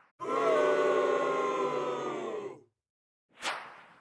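A held, pitched sound effect of several steady tones sounding together, lasting about two and a half seconds before it cuts off, then a short whoosh-like burst near the end.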